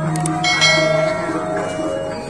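Gamelan-style music of struck metal bars and gongs playing a run of ringing notes, with one bright bell-like strike about half a second in.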